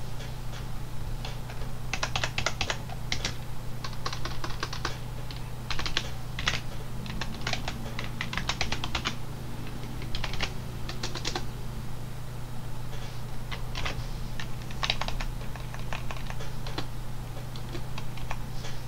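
Typing on a computer keyboard: irregular runs of keystrokes with short pauses between them, over a low steady hum.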